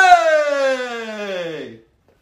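A man's loud drawn-out yell that starts suddenly at its loudest and slides steadily down in pitch for nearly two seconds before breaking off.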